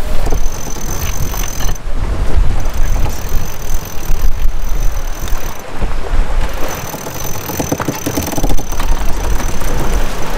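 Wind buffeting the microphone with water rushing along the hull of a sailboat running downwind in about 20 knots. Near the end a cockpit winch clicks rapidly as its handle is cranked.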